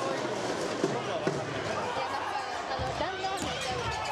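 Volleyball being struck, with a couple of sharp slaps about a second in, under steady shouting and cheering from players and spectators.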